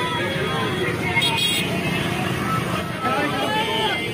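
Street crowd noise: many voices talking and calling out at once over the steady running of motorcycles and traffic, with a short hiss about a second in.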